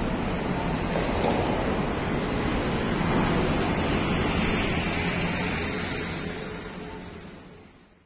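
Steady road traffic noise, fading out over the last two seconds.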